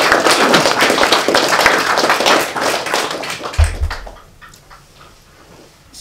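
Audience applauding, dense clapping that thins out and dies away about four seconds in. A short low thump sounds as the clapping ends.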